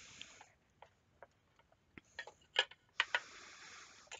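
Faint scattered clicks and taps of tools and a glazed work tile being handled, with a short scraping hiss about three seconds in as the tile is slid round on the table.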